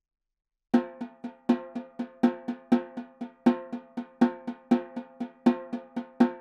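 Metal-shell snare drum played with sticks in a steady stream of eighth notes, about four strokes a second, starting just under a second in. Loud accented full and down strokes alternate with quiet tap and up strokes, so the pattern swells and drops in volume.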